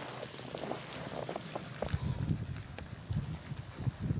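Wind buffeting the camera microphone, in low gusts that grow stronger about halfway through, with a few faint clicks.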